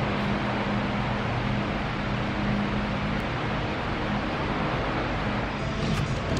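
Steady background hiss with a faint low drone, like the hum of machinery or ventilation in a large room.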